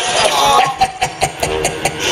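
Live stage music with a guitar, then a run of sharp knocks and clicks coming through the PA.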